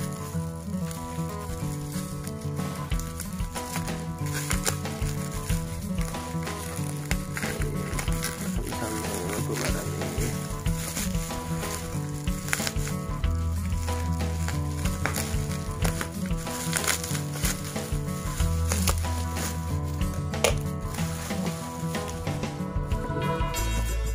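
Bubble wrap and plastic packaging crinkling and crackling as it is pulled open by hand, over steady background music.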